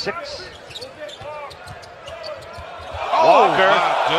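NBA broadcast game sound: a basketball bouncing on the hardwood and short shoe sounds under arena crowd noise, with a voice coming in and the sound growing louder about three seconds in.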